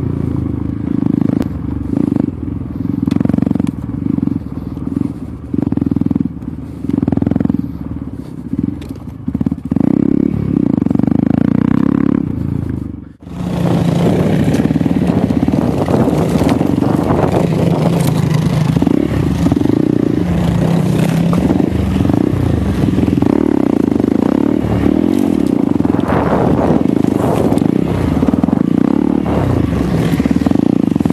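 Hero Xpulse 200's single-cylinder engine riding a dirt trail, the throttle opened and closed in pulses for the first dozen seconds. After a brief drop in sound about 13 seconds in, it runs more steadily under a layer of scraping and clatter.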